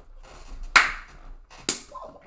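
Two sharp claps about a second apart, the first the louder, in a pause of the music.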